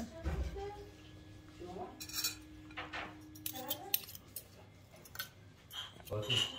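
Metal serving spoon and fork scraping and clinking against a glass serving platter as spaghetti is lifted out, in scattered light clicks with a sharper clink about four seconds in.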